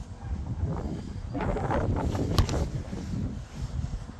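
Wind buffeting the phone's microphone, with one sharp knock a little past halfway: a football being struck from range, a mishit shot.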